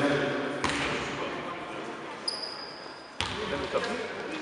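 Basketball bouncing on a gym floor in a large hall, with a short, steady, high-pitched tone about two seconds in.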